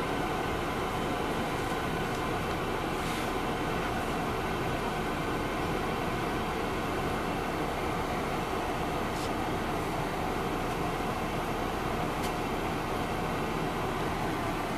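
Steady cabin drone of an MCI D4000 coach heard from inside, its Detroit Diesel Series 60 engine running at idle while the bus stands at a stop. There are a few faint clicks.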